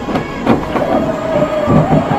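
Road noise inside a moving car during a near miss, with a sharp knock about half a second in, then a steady high tone held for about a second, and a few low knocks near the end.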